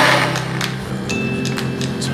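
A countertop blender's motor cuts off just after the start. Background music with a few light clicks follows.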